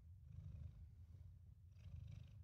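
Domestic cat purring steadily and faintly close to the microphone while being stroked on the face.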